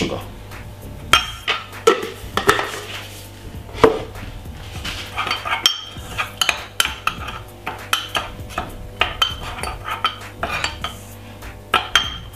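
Metal teaspoon clinking and scraping against a ceramic mug as it stirs dry hot chocolate powder, powdered milk and sugar together. A few separate sharp clinks in the first seconds, then quick repeated taps for most of the rest.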